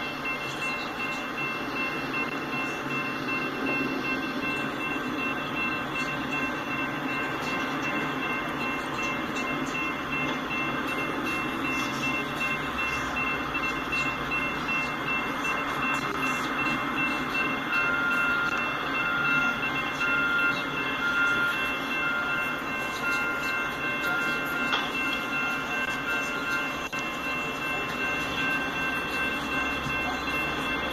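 Railroad grade-crossing warning bell ringing steadily with the gates down, over a continuous rumbling noise of rail vehicles and traffic. In the second half there is a run of about ten short beeps, roughly one a second.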